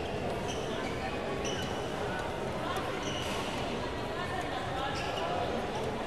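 Badminton doubles rally on an indoor court. Shoes give short, high squeaks on the court mat and rackets hit the shuttlecock, over steady spectator chatter echoing in the hall.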